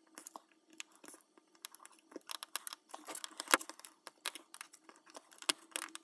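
Irregular small clicks and scrapes of a tool prying at a glued-in pressed eyeshadow pan in a plastic palette, loudest a little past the middle. The pan stays stuck in its glue.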